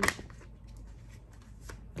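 A deck of tarot cards shuffled by hand: one sharp flurry of card noise right at the start, then a few faint clicks of cards being handled.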